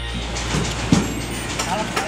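Work sounds as a crew handles a metal stage truss, over a steady low engine-like rumble. A sharp thump about a second in is the loudest sound, and a voice calls out near the end.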